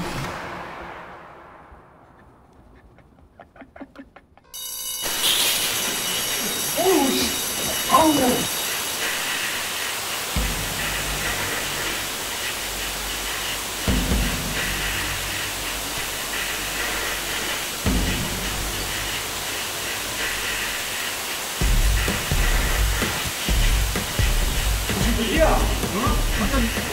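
Fire alarm bell, set off with a lighter flame, starting suddenly about four and a half seconds in and ringing on, mixed with dramatic music, shouting voices and low thuds.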